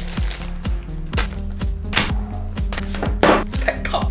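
Background music with a steady beat. Over it, a packet crinkles and rustles in short bursts about two seconds in and again a little past three seconds, as a foil food pouch is pulled out of a self-heating meal bag.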